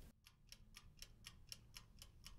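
Faint, even ticking, about four ticks a second.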